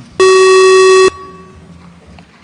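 Electronic buzzer signal of a parliament's voting and registration system: a single loud, steady beep lasting about a second, marking the opening of registration for the speakers' queue.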